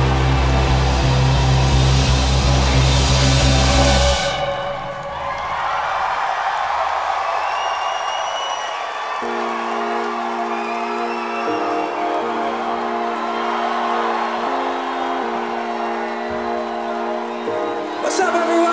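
A live rock band's final held chord, with drums, bass and cymbal wash, cuts off about four seconds in. A cheering crowd with whistles follows. Then sustained keyboard chords begin under the cheering, changing every couple of seconds.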